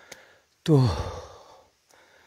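A man's voice: one drawn-out word, starting about half a second in, falls in pitch and trails off into a breathy, sighing exhale.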